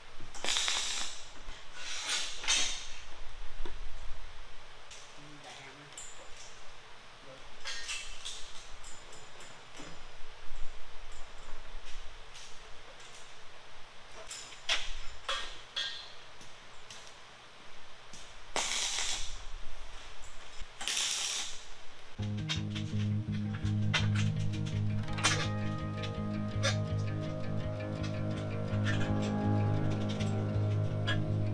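A MIG welder laying tack welds on steel tube: several short bursts, each under about a second, spread over the first two-thirds. Then background music with guitar takes over.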